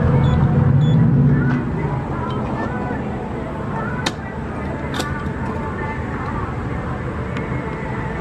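Gas station ambience with indistinct talk from a fuel pump's loudspeaker and steady traffic noise, the low rumble heavier in the first second or so. Two sharp clicks come about four and five seconds in.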